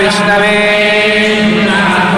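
Male Hindu priests chanting mantras from their prayer books in a steady recitation on long held notes.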